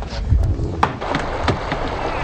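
Sharp knocks and clatter aboard a wooden sailing ship, twice standing out clearly, over a steady rumble of wind and water.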